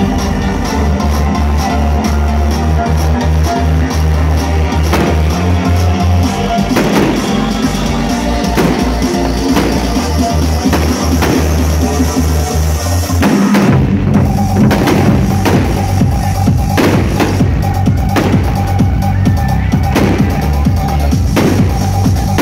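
Large Chinese barrel drums struck hard in time with a loud electronic backing track with a heavy bass line. About fourteen seconds in the music breaks off briefly and a new section starts with more frequent drum hits.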